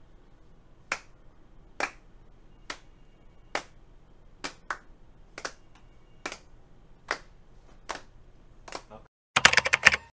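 Slow, evenly spaced hand claps, about one a second. Near the end comes a quick run of computer-keyboard typing clicks.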